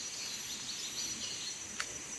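Tropical forest ambience: a steady high insect drone with faint bird chirps in the first half, and a single short click near the end.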